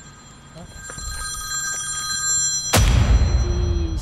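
Smartphone ringtone for an incoming call, a chord of steady high tones starting about half a second in. Nearly three seconds in it is broken off by a loud sudden boom that fades away in a rush of noise and a low rumble.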